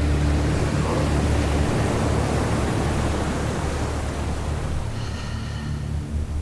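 Steady rushing noise of water, swelling during the first few seconds and then easing, over low sustained tones of background music. Faint high tones of the music come in near the end.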